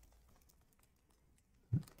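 Faint light clicks and taps of fingers handling a hard plastic PSA graded-card case, with a short breath-like vocal sound near the end.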